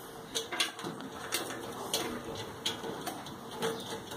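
Several light clicks and taps spread over a few seconds as a Samsung dryer's wiring harness and plastic front drum housing are handled during reassembly.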